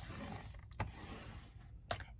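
Paper trimmer's scoring blade carriage sliding along its rail and pressing a score line into cardstock, a faint even rubbing with a click about a second in and another near the end.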